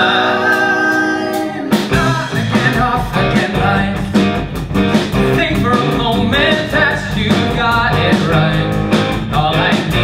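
Male voices singing a show tune with a live band of piano, guitar, bass and drums. A long held note opens, then about two seconds in the band hits together and the singing moves into a quicker, rhythmic passage.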